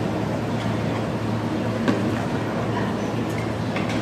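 Steady restaurant background noise: an even rushing sound over a low hum, with a few faint clicks.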